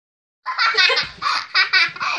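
A young girl laughing in short, high-pitched bursts, starting about half a second in.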